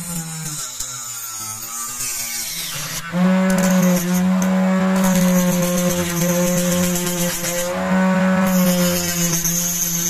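A homemade flexible-shaft rotary tool with a small saw disc cutting through PVC pipe. About three seconds in, a loud steady motor whine sets in, with the hiss of the disc biting into the plastic coming and going over it.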